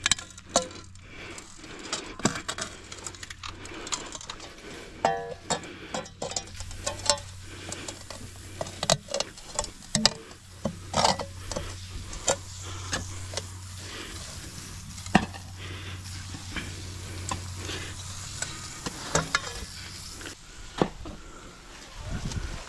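Steel shovel blades biting and scraping into packed dirt and grass, with irregular sharp crunches and knocks as soil is pried loose. A steady low hum runs underneath.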